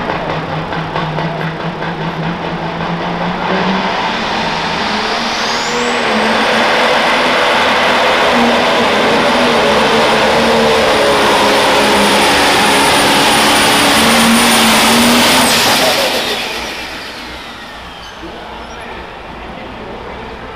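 Pro Stock pulling tractor's turbocharged diesel engine making a full-power pull on the sled. The engine note climbs about four seconds in, a high turbo whine rises and holds, and about sixteen seconds in the engine lets off and the whine falls away.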